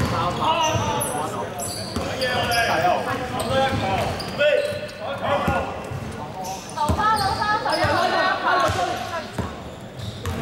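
Basketball being dribbled on a hardwood gym floor, with players' shouts and calls carrying through a large, echoing sports hall.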